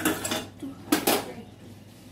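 Metal cookware clattering: a few sharp metal-on-metal knocks, the loudest about a second in, as steel utensils (a spatula and pan lid) are handled at a kadai.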